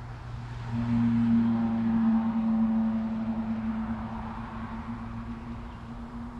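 A vehicle's steady hum over road rumble, swelling about a second in and then slowly fading over several seconds.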